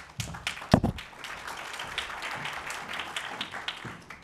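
Audience applauding, a dense patter of many hands clapping. A single loud thump sounds a little under a second in.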